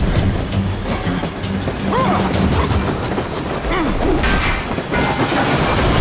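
Steam train running along the rails, mixed with a music score.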